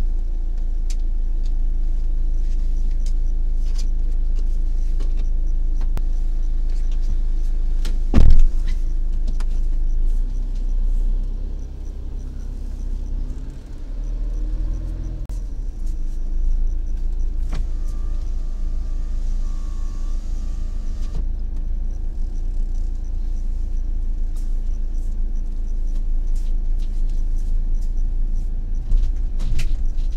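Vehicle engine running, heard from inside the cab: a steady idle, then the engine pulling away and driving slowly. A single loud thump comes about eight seconds in, and a faint high wavering tone is heard briefly about two-thirds of the way through.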